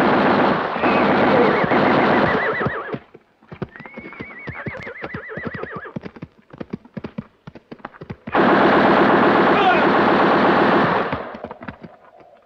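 Film sound effects of sustained machine-gun fire in two long bursts, the first ending about three seconds in and the second starting about eight seconds in. Between the bursts a horse whinnies and hooves clatter, and more whinnies are heard under the gunfire.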